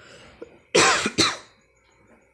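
A man coughs twice in quick succession, just under a second in.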